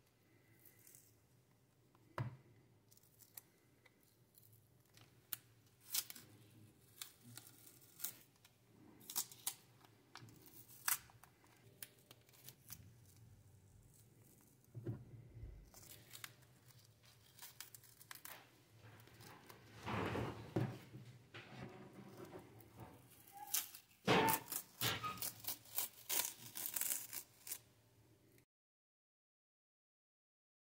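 Masking tape being peeled off the plastic case of a freshly spray-painted calculator: irregular crackling rips and tears, busiest in the last third, cutting off suddenly near the end.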